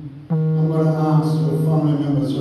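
Church hymn music: after a brief dip, a voice holds one long sung, chant-like note from about a third of a second in.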